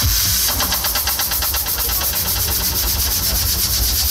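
Loud machine-like buzzing played over the stage PA: a rapid even pulse of about ten beats a second over a steady low hum, an engine-like stretch of a dance-performance track.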